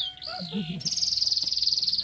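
Birds calling: a couple of high, slurred whistled notes, then a loud, fast, buzzy high trill that starts about a second in and holds steady.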